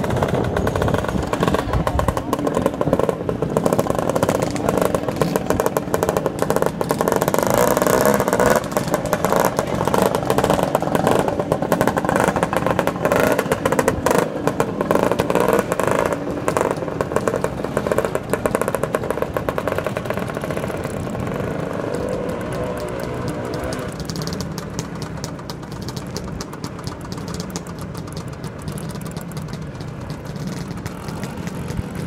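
A group of vintage two-stroke scooters (Lambrettas and Vespas) riding off together, engines running and revving close by. The sound fades over the last third as they move away.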